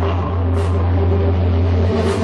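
Dark electronic witch house music played live: a loud held bass drone under a sustained synth chord, with a short hiss swell about half a second in and no voice.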